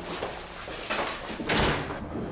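An apartment door being opened and then shut: a sharp clack about a second in, then the louder thud of the door closing.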